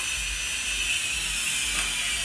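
Steady whirring background noise with a hiss and a thin high whine that slowly drifts a little lower in pitch, with no speech over it.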